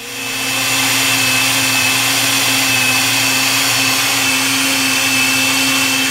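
Countertop blender motor running steadily at high speed, blending a liquid tomato mixture with a piece of onion; it comes up to speed over about the first second, then holds a steady whine.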